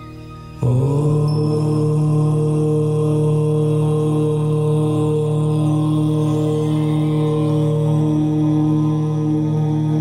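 A deep voice chanting a long, held "Om" that comes in suddenly about half a second in, bends up slightly and then holds one steady pitch. It sits over a softer sustained ambient music drone.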